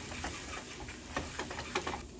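Butter and flour sizzling in a nonstick frying pan as a silicone spatula stirs them into a roux, with short scrapes of the spatula against the pan over a steady faint hiss.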